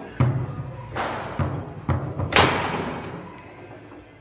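Foosball ball being struck by the table's plastic players and knocking against the rods and walls during play, a series of sharp knocks. The hardest hit comes about two and a half seconds in and rings on briefly.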